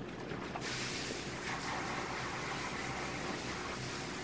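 Garden hose spraying water onto a dog during its bath, a steady hiss that starts suddenly about half a second in.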